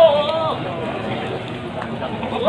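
A goat bleating once, a wavering call that ends about half a second in, over market background chatter.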